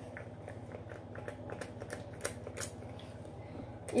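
Faint handling noises: scattered light clicks and rustles as hands move small plastic items, over a low steady hum.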